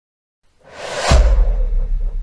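Logo-reveal sound effect: a whoosh that swells up from about half a second in and lands on a deep boom just after a second, then a lingering low rumble.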